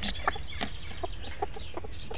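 A broody chicken hen clucking in short single notes, about five in two seconds.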